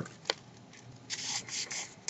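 A sheet of printer paper being folded and creased by hand into a mountain fold, giving a short tick near the start and then a few brief rustling, rubbing bursts about a second in.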